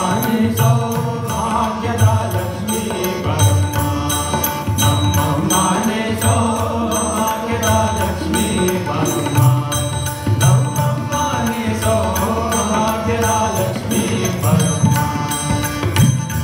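Live Indian devotional music: a male voice singing with harmonium, tabla and a steady tanpura drone.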